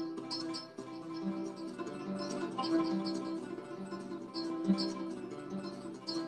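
Nylon-string classical guitar played fingerstyle: a short arpeggio figure plucked with thumb, index and middle fingers (p-i-m), repeated over and over as a right-hand speed exercise.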